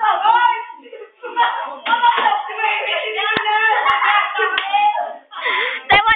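Several young voices talking and calling out over one another in a small room, with a few sharp hand claps in the middle of the stretch and a louder one near the end.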